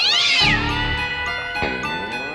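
A cat meowing twice over background music: a high meow that rises and falls at the start, and a lower, drawn-out one that dips and climbs near the end.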